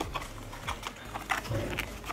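Fingers and fingernails handling a small cardboard perfume box as it is opened: a string of light, irregular clicks and taps on the packaging.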